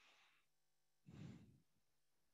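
Faint breaths close to the microphone: an out-breath fading out about half a second in, then a short, sigh-like breath about a second in, with near silence around them.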